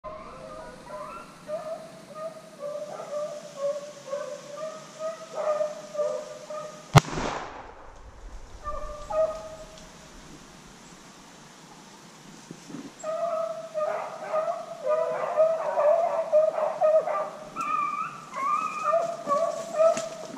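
A pack of rabbit hounds baying on a chase, with a single loud gunshot about seven seconds in. The baying fades for a few seconds after the shot, then comes back louder and more continuous toward the end.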